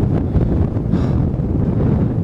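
Wind buffeting the microphone: a loud low rumble that rises and falls without a break.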